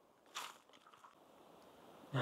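Near silence, with one short faint hissy noise about a third of a second in.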